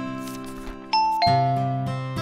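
Background music of acoustic guitar strumming, with a bright two-note descending chime, ding then dong, about a second in.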